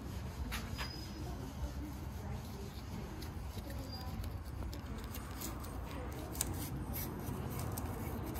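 Steady low background hum with a few faint, scattered clicks and light taps.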